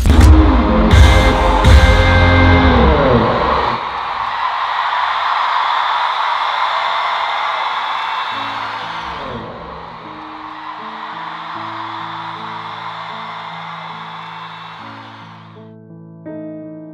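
Loud electronic dance music with heavy bass ends a few seconds in, giving way to a large concert crowd cheering and screaming. Soft electric piano chords come in under the cheering about halfway through, and the cheering cuts off just before the end.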